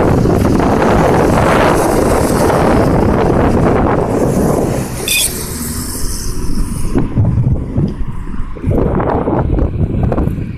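Wind buffeting a phone microphone over road traffic noise; the buffeting eases about halfway through. A brief high chirp sounds about five seconds in.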